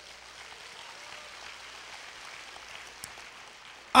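Faint audience applause: a soft, even sound that fades out just before the end, with one small click about three seconds in.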